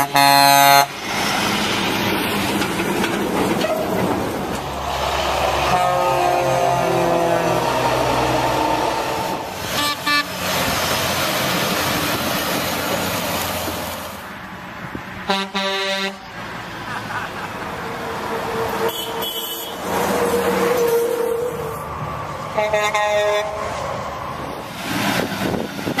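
Truck air horns sounding a series of separate blasts, some short and some held a second or two, over steady road noise. The first blast, at the very start, is the loudest.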